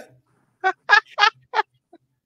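A person laughing in short, evenly spaced bursts, about three a second: four clear ha's and a faint fifth near the end.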